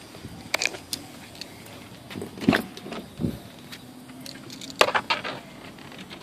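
Scattered clicks and knocks with keys jangling as someone climbs into a car's driver's seat, with a dull thump about two and a half seconds in and another just after.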